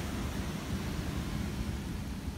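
Wind buffeting a phone microphone outdoors on a beach: a steady, uneven low rumble with hiss over it.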